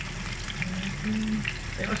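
Flour-breaded pork strips shallow-frying in oil in a frying pan: a steady sizzle with small crackles.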